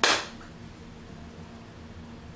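A single sharp hand clap, dying away within a moment, followed by quiet room tone.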